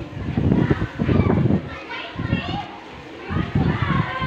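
Several people's voices talking over one another in lively, overlapping chatter close by, with no single clear speaker.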